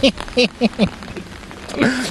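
Rain falling on an open umbrella held over the microphone, heard as a steady hiss, with a man's voice in the first second and again near the end.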